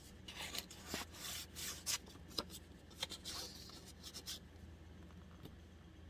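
Paper rustling with light taps and scrapes as the pages and paper pockets of a handmade altered book are handled and turned. The rustling stops about four seconds in.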